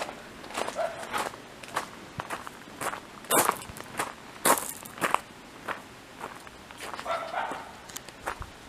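Footsteps of a person walking on a garden path, a step roughly every half second.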